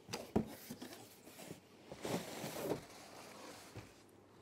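Cardboard parcel being unpacked by hand: a few light knocks and scrapes, then a rustle of packaging about two seconds in as a gift box is lifted out.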